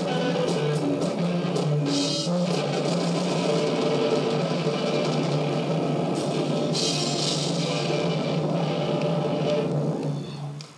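Rock band playing steadily: electric guitar over a drum kit, with brighter, crashing passages about two seconds in and again around seven seconds in.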